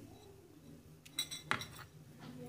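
Glassware clinking: a small glass spice bowl knocking against a glass mixing bowl as powdered spice is tipped in. There is a short ringing clink just over a second in, then two sharp clicks, over a faint steady low hum.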